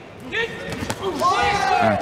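Dull impact thuds of gloved Muay Thai strikes landing at close range, the clearest about a second in, with a man's voice over them.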